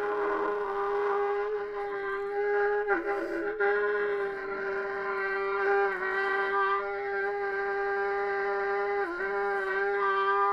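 Unaccompanied trumpet holding one long, steady mid-range note, dipping briefly in pitch three times, about every three seconds.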